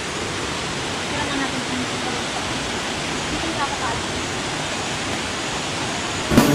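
Steady rush of falling water from a nearby waterfall, with faint voices under it.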